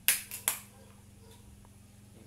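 Ring-pull can of pineapple juice being opened: a sharp crack of the tab with a short hiss, then a second crack about half a second later as the tab is pushed down.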